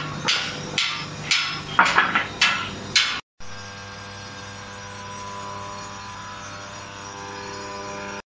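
Hammer blows on thick steel plate, a quick run of sharp strikes for about three seconds. After a brief dropout, a steady hum with several held tones follows.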